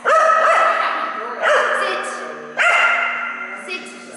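A dog giving three drawn-out cries in a row, each about a second long.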